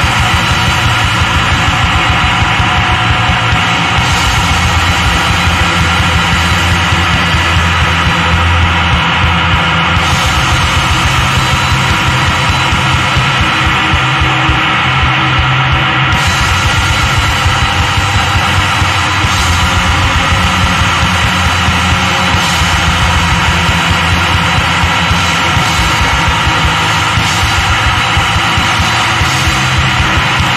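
Noise punk from a bass-and-drums duo: a loud, dense, unbroken wall of bass guitar and drums with a heavy low end.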